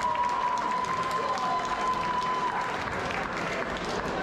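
Crowd applauding at the close of a boxing bout, a dense patter of many hands clapping. A steady high tone runs under it and stops about two and a half seconds in.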